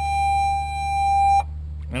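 A single steady electronic beep, one high tone held for about two seconds and growing slightly louder, cuts off suddenly about one and a half seconds in, over a steady low hum.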